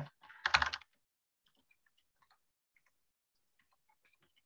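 Faint typing on a computer keyboard: scattered light key clicks.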